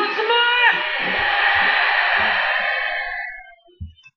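A person's loud voice rising in pitch, followed by a few seconds of noisy hiss that fades out.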